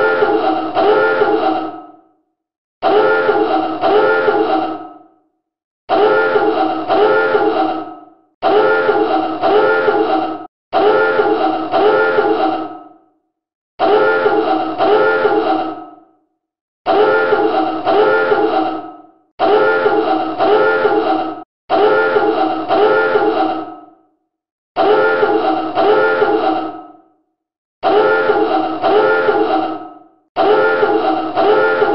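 Submarine dive alarm klaxon sounding in a run of loud blasts, each about two seconds long with a wavering tone that fades out, repeating every two and a half to three seconds: the signal to dive.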